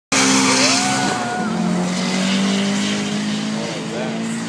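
Two drag cars at full throttle down the strip: a turbocharged Nissan SR20VE four-cylinder on 17 psi and a Toyota Supra. The engine notes climb, drop sharply about a second and a half in as a gear is shifted, then hold a steadier pitch.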